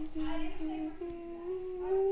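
A person humming a slow tune: a run of short held notes with small breaks between them, the pitch stepping up a little and settling on a longer note near the end.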